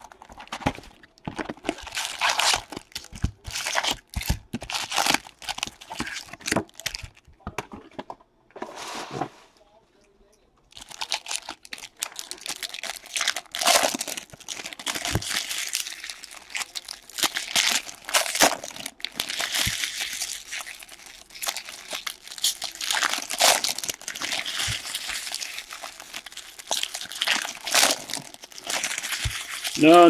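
Foil wrappers of Bowman jumbo baseball-card packs crinkling and tearing as the packs are ripped open and handled: a quick, irregular string of crackles with a short lull about ten seconds in.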